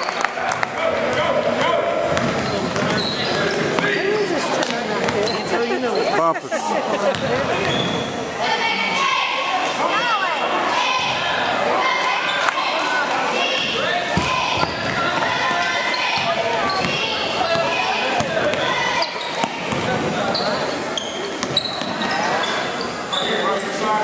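Basketball game sounds in a gym: the ball bouncing on the hardwood court, sneakers squeaking, and spectators' and players' voices and shouts, all echoing in the large hall.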